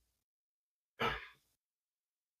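A man's short breath about a second in, lasting about half a second and fading away, amid otherwise dead silence.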